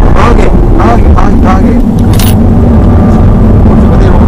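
BMW 120d's four-cylinder turbodiesel and road noise heard loud inside the cabin as the car is driven on track, a dense low rumble under a steady engine note.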